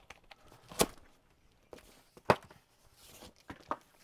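Tensioned plastic packing straps on a cardboard box snapping as they are cut with a SOG SEAL XR folding knife: two sharp snaps, the louder about two seconds in, then a few lighter ticks near the end.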